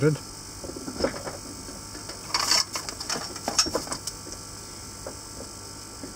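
Small clicks and knocks of tools being handled and set down on an electronics workbench, with a brief rustling noise about two and a half seconds in, over a faint steady hum.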